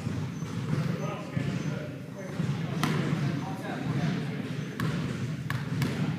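A basketball bouncing a few times on a hardwood gym floor, the free-throw shooter dribbling before the shot, with voices chattering in the background.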